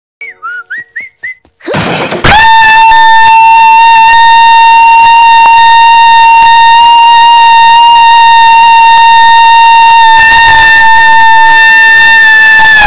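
Brief whistled tune, a short crash, then an extremely loud, distorted held note standing in for a scream. The note stays at one pitch for about ten seconds and cuts off suddenly.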